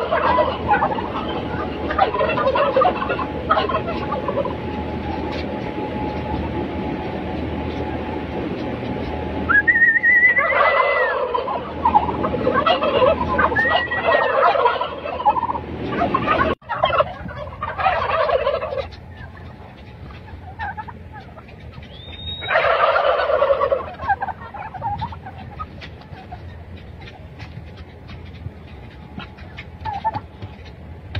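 A flock of domestic white turkeys gobbling in repeated loud bursts: one at the start, a longer run from about ten to fifteen seconds in, and shorter ones around eighteen and twenty-three seconds. The birds are quieter in the last few seconds.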